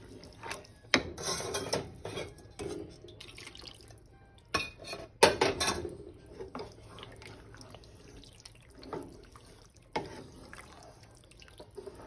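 Wooden spatula stirring small penne pasta in a thick cream sauce in a pan: irregular wet squelching, loudest about one second in and again around five seconds in, with a few sharp knocks of the spatula against the pan.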